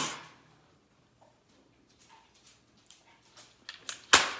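The Magpul Zhukov folding stock's hinge is worked: a sharp click at the start, then near quiet with a few faint ticks, and several small clicks near the end as the stock is folded back.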